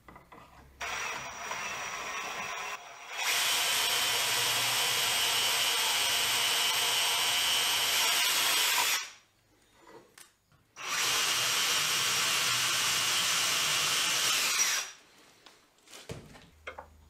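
Cordless drill boring into plywood with a twist bit through a drill-guide bushing, in two runs several seconds long. The first starts softly and then speeds up; after a pause of about two seconds the second run follows and winds down near the end.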